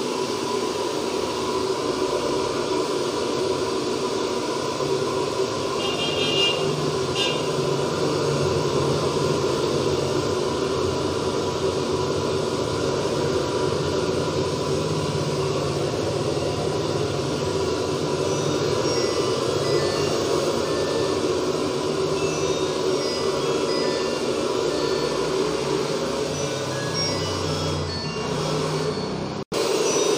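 Handheld electric hair dryer running steadily, a constant fan rush with a steady whine, blowing on freshly washed hair. It cuts off abruptly just before the end.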